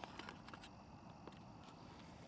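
Near silence, with a few faint small clicks of a plastic camping lantern being handled as its hanging hooks are folded out.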